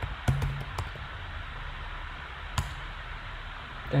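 A few spaced-out keystrokes on a computer keyboard, the last one about two and a half seconds in, over a steady low hum.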